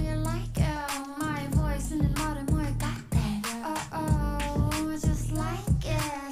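Upbeat pop song with a high-pitched sung vocal over a steady beat of about two beats a second.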